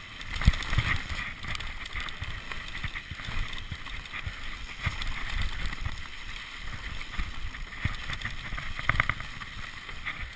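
Mountain bike running fast down a rough dirt trail: wind buffeting the camera microphone over tyre noise and the rattle of the bike. Frequent thumps from bumps, the hardest about half a second in, and a burst of clattering near the end.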